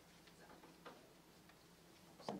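Near silence: quiet room tone with a few faint, irregularly spaced clicks.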